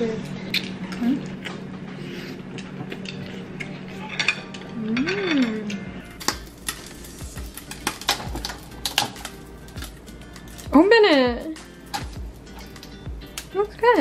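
Clicks and metal clatter of a Cuisinart flip waffle maker as its handle is worked and its lid opened, in the second half, over background music. A short exclamation is heard about eleven seconds in.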